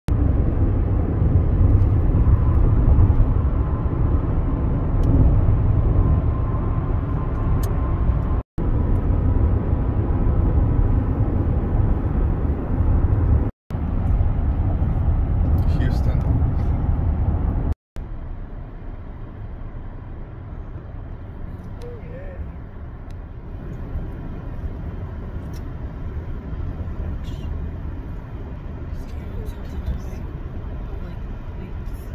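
Road and tyre noise inside a moving car's cabin: a steady low rumble. It drops to a much quieter level after a break about 18 seconds in, with two earlier short dropouts where the recording cuts.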